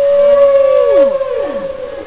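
Recorded whale song on the soundtrack: one long held moaning note, with two downward-sliding calls about a second in, fading toward the end.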